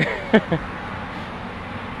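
A man's short laugh, two quick falling bursts about half a second in, followed by steady low outdoor background noise.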